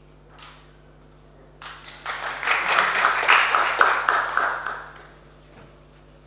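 Audience applauding, starting about a second and a half in, building quickly, and fading out about five seconds in.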